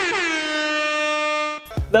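Edited-in horn-like sound effect: a buzzy pitched blast that wavers, slides down and holds one steady note, then cuts off about one and a half seconds in.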